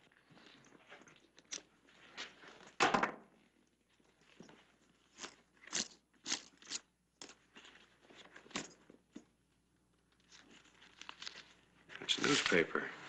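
Faint handling noises from a leather dispatch case being opened, then paper rustling and crinkling as folded newspaper is drawn out, with a louder knock about three seconds in.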